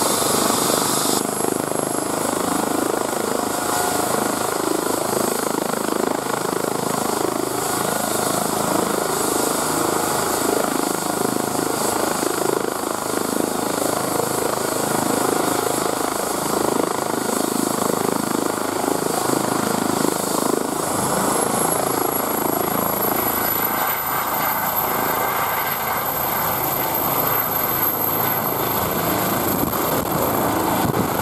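Eurocopter EC135 rescue helicopter running on the pad, its turbines and rotor giving a steady loud noise. About two-thirds of the way through, a high turbine whine climbs in pitch and holds as power comes up for lift-off.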